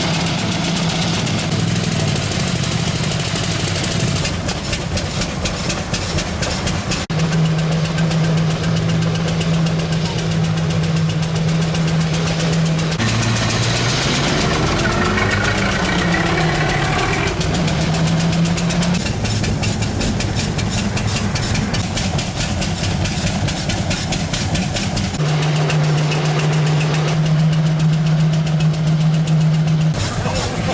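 Engine of a veteran Cadillac running as it drives along, heard from on board, with the pitch rising and falling around the middle.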